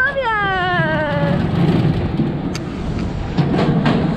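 A rider's high, excited whoop that falls in pitch over about a second and a half, on a swinging suspended ride. It is followed by a steady low rumble from the moving ride and a few sharp clicks.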